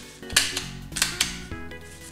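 Handheld stapler snapping shut as it fastens a rolled dracaena leaf: three sharp clicks within about a second.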